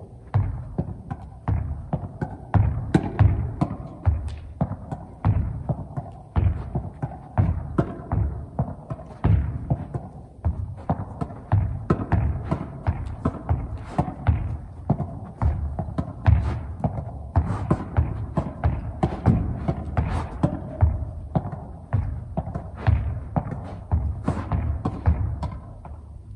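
Rapid, continuous run of dull thuds, about two to three a second: a tennis racket striking a small soft ball against a wall at close range, combining groundstrokes and volleys.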